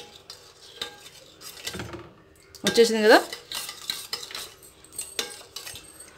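Steel spoon stirring milk in a stainless steel bowl to dissolve sugar, with repeated scraping and clinking against the bowl. A brief voice sound, the loudest moment, comes about halfway through.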